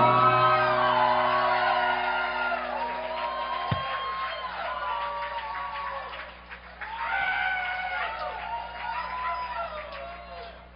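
The last chord of a rock band's electric guitars and bass ringing out through the amplifiers and fading, then cut off suddenly about four seconds in, while the audience cheers and whoops.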